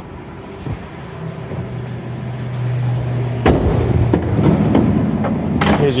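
The van's 2.4-litre four-cylinder engine idling with a steady low hum, then about three and a half seconds in a heavy door thud followed by a run of clunks and rattles as the van's doors are handled.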